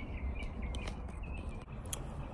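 Outdoor background with a few short, faint bird chirps in the first second over a low steady rumble, and a couple of light clicks.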